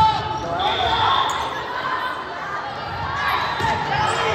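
Volleyball rally in a gym hall: players and spectators calling out over one another, with the thud of the ball being played at the start and more knocks later.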